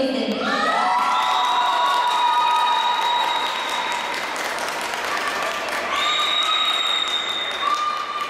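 Crowd applauding and cheering, with long, high-pitched drawn-out shouts of encouragement from several voices.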